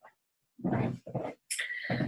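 A woman's short breaths and faint non-word vocal sounds, in three brief bursts starting about half a second in.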